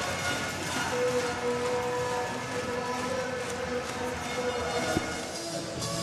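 Handball arena crowd noise with music, a long held note starting about a second in, and a single sharp knock near the end.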